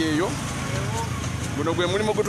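Steady low engine rumble of street traffic with passing motorcycles, under a voice that stops just after the start and resumes near the end.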